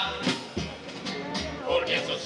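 A carnival murga playing a pasodoble: Spanish guitar and bass drum keep the beat while the group's unison melody drops away for about a second in the middle and comes back near the end.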